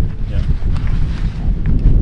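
Strong wind buffeting the microphone: a loud, uneven low rumble.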